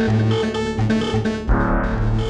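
Minimal deep tech house music: short, repeating synthesizer and keyboard notes over a pulsing synth bass, with a deeper bass layer coming in about one and a half seconds in.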